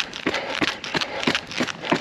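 Running footsteps on a wet gravel trail, about three strides a second, picked up by a handheld camera carried by the runner.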